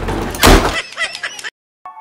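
A wooden door slams shut about half a second in, followed by a few lighter knocks as it settles. The sound then cuts off suddenly, and keyboard music notes begin near the end.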